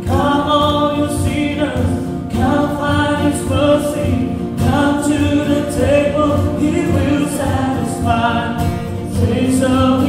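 Worship band music: several voices singing a verse together over acoustic guitar, the singing coming in right at the start.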